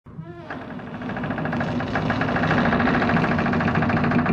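A machine running with a steady hum and a fast, even rhythmic clatter, growing louder over the first second or two.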